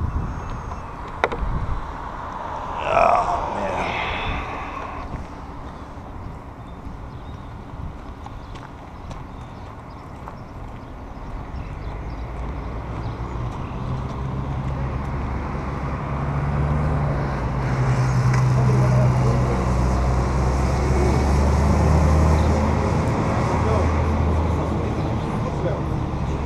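Low, steady hum of a motor vehicle engine running nearby, growing louder through the second half.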